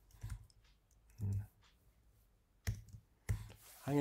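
Computer keyboard keys clicking a few times in typing, with two sharper clicks near the end. A short low hum of a man's voice about a second in.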